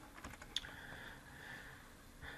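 A quick run of faint computer keyboard keystrokes in the first half second or so, the last one sharpest.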